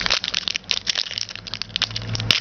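Wrapper of a trading-card pack crinkling and crackling in quick, irregular snaps as the pack is handled and opened.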